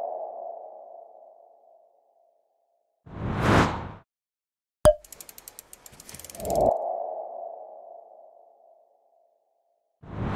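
Logo-animation sound effects repeating: a ringing tone fading out over about two seconds, a whoosh that swells and stops about three to four seconds in, a sharp click, then a quick run of ticks leading into the same ringing tone, which fades out again near the ninth second. Another whoosh swells up at the very end.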